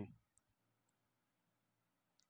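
Near silence, broken only by two faint, brief clicks in the first second.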